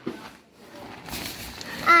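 Nylon tent fabric rustling as the tent is pushed open, followed near the end by a drawn-out spoken "ah".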